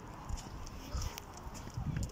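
A few soft footsteps while walking outdoors, over a low rumble of wind and handling on a phone microphone.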